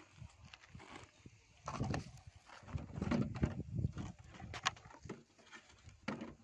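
Irregular rustling and knocking as a woven plastic sack, a plastic bottle and tools are handled and set down on dry ground, with a few sharp clicks.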